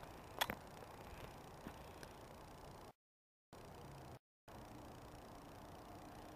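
Faint, steady outdoor background noise with one short, sharp click about half a second in. The sound cuts out to dead silence twice near the middle, once for about half a second and once for a quarter second.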